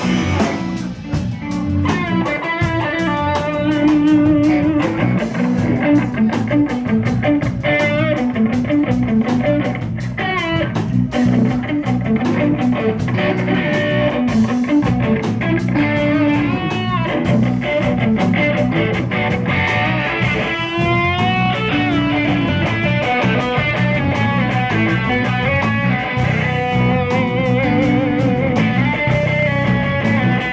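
A band jamming live: electric guitar playing a lead line with bent, wavering notes over a steady drum kit beat.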